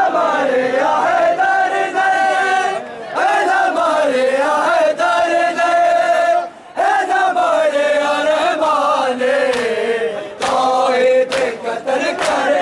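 A crowd of men chanting a mourning lament together in sung phrases of about three seconds each, with short breaks between phrases. A few sharp smacks come near the end.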